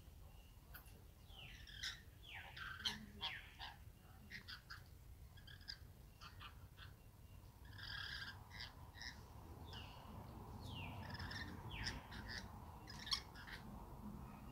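Rainbow lorikeets chattering: a string of short, high-pitched calls, several sliding downward in pitch, over a faint low rumble.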